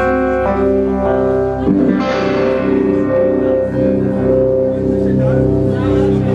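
Live rock band playing the slow opening of a song: sustained electric guitar notes that change every second or so over a steady low bass layer.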